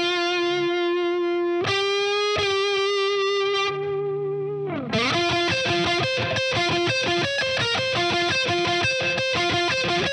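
Distorted electric lead guitar solo heard on its own: a bend up into a long sustained note, a second held note with vibrato, then a slide down about halfway through into a fast alternation between two notes.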